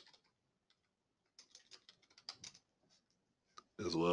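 Light clicking at a computer: one click at the start, then a quick scattered run of clicks between about one and a half and two and a half seconds in, and one more just before a man's voice starts near the end.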